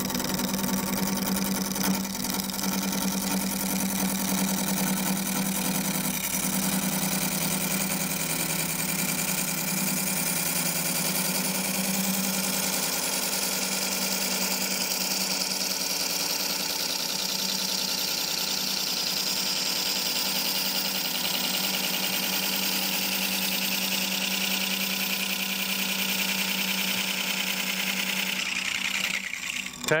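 Wood lathe running while a McNaughton Center Saver curved coring blade cuts deep into a spinning bowl blank of dense wood: a steady hum with a hissing cut, which dies away just before the end.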